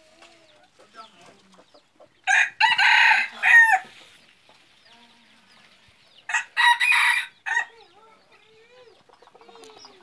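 A jungle-fowl decoy rooster crowing twice, each crow a short call in a few parts, the second coming about four seconds after the first.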